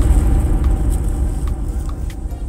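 Loud low rumble that slowly fades, the tail of a boom-like sound effect that hits suddenly just before.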